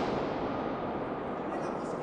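The echo of a gunshot rumbling around a large tiled stone hall and slowly dying away.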